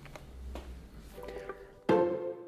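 Low room hum, then a short musical jingle fades in about a second in, ending with a sudden loud chord just before the end.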